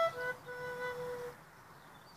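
Transverse flute playing the end of a melody: a short note, then a long held final note that stops a little over a second in.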